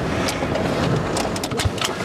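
Wind buffeting an outdoor microphone: a steady low rumble, with a few short clicks scattered through it.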